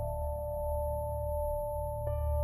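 Ambient film score: a few steady held tones over a low, sustained drone.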